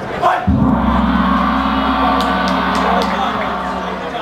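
A horn or buzzer signalling the start of the round: one long steady blast starting about half a second in and cutting off suddenly after about three and a half seconds, over crowd voices.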